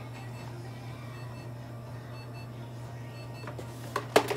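A steady low electrical hum with a few faint, short, high-pitched peeps, and a sharp clack near the end as the plastic carrier cage is turned on the table.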